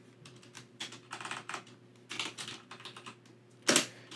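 Computer keyboard keys being typed in short irregular runs of clicks, with one louder sharp click near the end.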